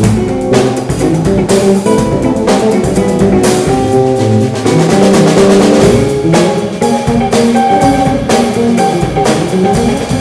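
A live band playing: electric guitars over a drum kit, with steady drum and cymbal hits under sustained guitar notes.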